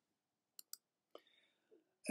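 Near silence, with three faint short clicks in the first half.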